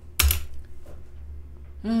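A short, loud burst of noise on the microphone about a quarter of a second in, then a man sighing 'ai' with a falling pitch near the end.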